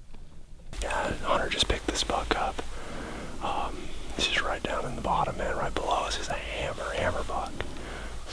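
Near silence for the first second, then a man whispering close to the microphone.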